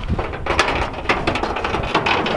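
The old steel hood of a 1948 Chevrolet school bus being pried up and lifted open: a rapid string of metallic clicks, scrapes and rattles from the aged hood latch and hinges.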